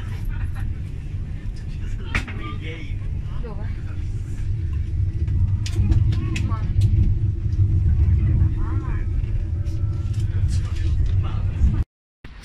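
Steady low rumble of a high-speed train carriage under way, heard from inside the cabin, growing louder about halfway through, with faint voices over it.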